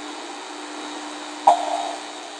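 Steady background hum and hiss, with one short sound about one and a half seconds in that starts with a click.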